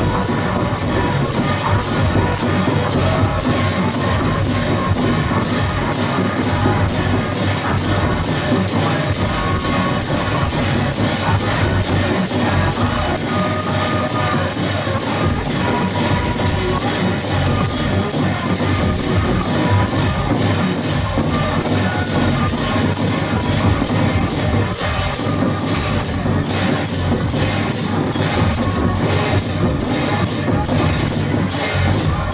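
A temple-procession percussion troupe plays: large drums beaten with sticks and many pairs of hand cymbals crashed together. The beat is loud, steady and fast, about two to three strokes a second.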